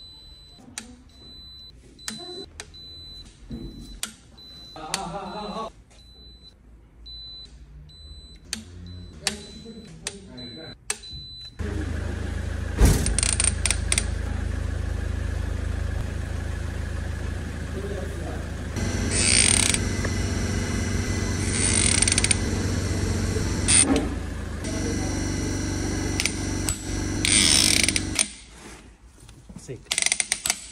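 Short high-pitched electronic beeps, repeated about once a second, from a digital torque-angle adapter, with sharp ratchet clicks, as cylinder-head bolts are angle-tightened. About twelve seconds in, a much louder steady sound with many held tones takes over and runs on.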